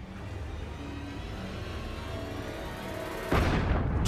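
Tense background music over a low rumble; about three seconds in, a sudden loud burst of gunfire cuts in.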